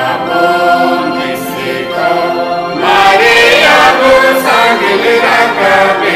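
Voices singing a Mundari-language Good Friday song in long held notes, getting louder about three seconds in.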